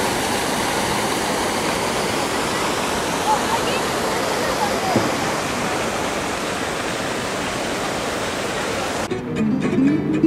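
Fountain jets splashing steadily into a shallow pool, with a murmur of voices behind. About a second before the end it cuts off suddenly to guitar music.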